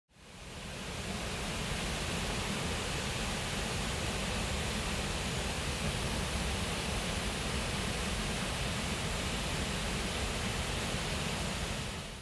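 A waterfall: a steady rush of falling water that fades in over the first second or so and fades out near the end.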